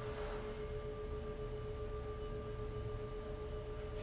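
Small metal singing bowl sounding a steady, held ringing tone with a few overtones, kept going by a mallet rubbed around its rim.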